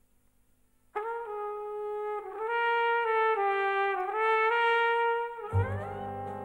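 Jazz trumpet entering sharply about a second in after a near-quiet moment, playing long held notes that step between a few pitches. Near the end, deeper band instruments come in under it along with a quick rising glide.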